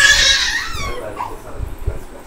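A loud, high-pitched cry that wavers in pitch and trails off about a second in.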